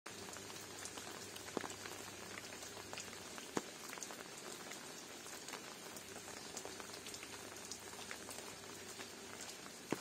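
Water drops pattering on leaves and ground in wet undergrowth, a steady soft hiss with scattered ticks and a few sharper single drops.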